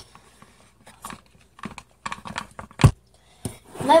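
Plastic utensil clicking and scraping against a plastic tub as a slime mixture is stirred, in scattered light knocks, with one louder knock a little under three seconds in.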